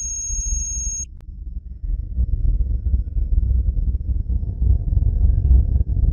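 Sci-fi intro sound effects: a high, rapidly pulsing electronic beep lasting about a second, then a low, steady synthetic drone.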